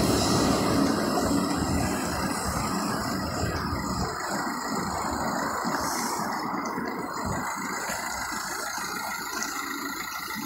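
Road traffic on a town street: a passing vehicle fades away over the first few seconds, leaving a steady hum of traffic.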